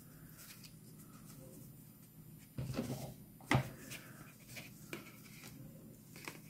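Faint handling of cardstock gift tags and cord as they are threaded: a short rustle about two and a half seconds in, then a sharp click just after, with a few small ticks later, over a low steady hum.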